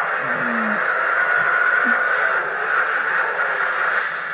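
Action-film trailer soundtrack played back through a speaker: a loud, steady rush of noise with no clear dialogue.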